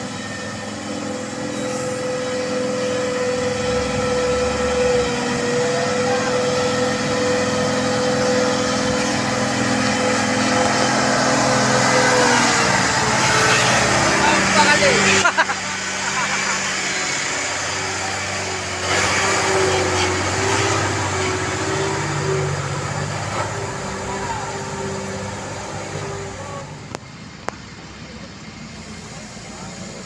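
Hino 500 diesel dump truck laden with coal driving slowly through mud, its engine note holding steady and growing louder as it nears. About halfway through it passes close by at its loudest, the note dropping lower, then fading away.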